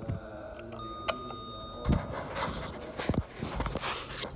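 A 2004 Otis elevator sounds one steady electronic beep about a second long after its call button is pressed. After it come a thump and a few knocks and rustles as the person steps into the car.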